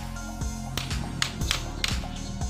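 Claw hammer tapping a nail into a small wooden door-latch piece on a slatted wooden door: about five sharp strikes in the second half, over background music.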